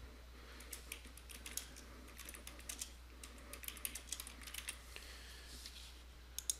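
Typing on a computer keyboard: a quick run of faint keystrokes, a short phrase typed out over about four seconds, starting about a second in.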